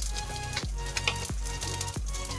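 Cumin seeds sizzling and crackling in hot oil in a wok as they are tempered, with background music with a steady beat underneath.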